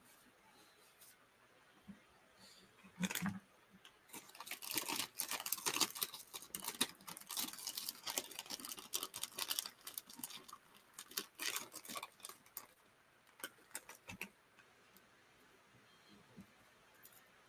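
Close to the microphone, a dense run of quick crackling and rustling handling noises starts about three seconds in and dies away a few seconds before the end.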